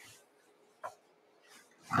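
A pause in a man's speech: near silence with one short, faint sound about a second in, then his voice resumes at the very end.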